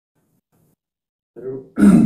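Silence for over a second, then a man's short grunt-like vocal sounds near the end, leading straight into speech.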